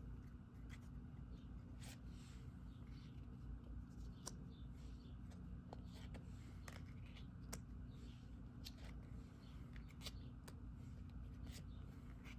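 Oracle cards being handled and laid down on a table: faint soft swishes of card sliding on card, with scattered light clicks and taps throughout.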